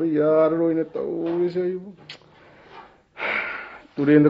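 A voice actor's voice making drawn-out, wordless voiced sounds for about two seconds. Near the end comes a short breathy rush of air, like a sigh or gasp.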